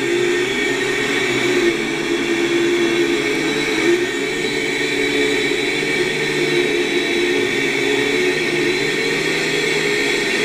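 Syma X5C quadcopter's motors and propellers whirring steadily, heard on the recording from the drone's own onboard camera as it flies low over the ground.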